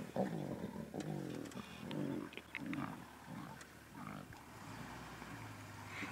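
Lion cubs growling at each other over a buffalo carcass: a string of low, rough growls as a cub guards its share of the meat.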